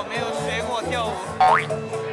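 A cartoon-style rising slide-whistle 'boing' sound effect, one quick upward glide about one and a half seconds in and the loudest thing here, over music with a steady bass line and a man talking.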